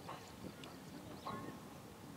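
Faint outdoor ground ambience with a few short, sharp knocks or calls, roughly half a second to a second apart, and faint distant voices.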